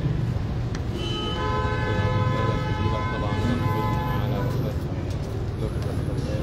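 A vehicle horn sounding one long, steady honk of about three and a half seconds, starting about a second in, over a constant low street hum.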